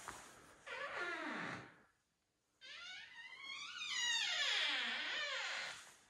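A door's hinges creaking as the door swings, in two long squeaks whose pitch wavers and slides downward.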